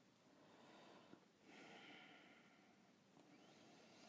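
Near silence, with faint breathing, a soft breath swelling about one and a half seconds in.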